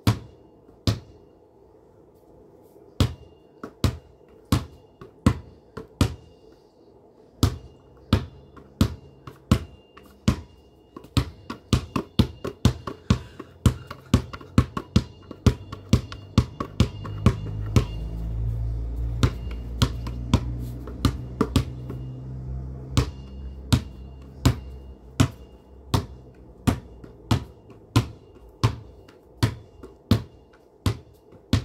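A rubber basketball bounced over and over in a dribble, each bounce a sharp slap, at about two to three a second after a short pause near the start. A low steady hum comes up under the bounces and is loudest about two-thirds of the way through.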